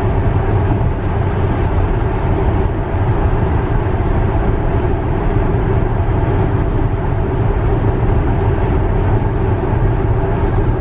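Steady road and tyre noise inside a Tesla Model X cabin at highway speed, about 68 mph. There is no engine note, only an even, low noise.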